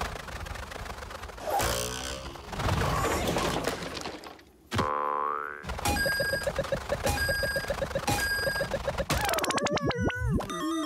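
Cartoon sound effects in quick succession: a wobbling boing, a rising whistle-like glide about halfway through, then a run of quick repeated pitched taps, ending in a dense clatter and a falling pitch as the dog hits the rock.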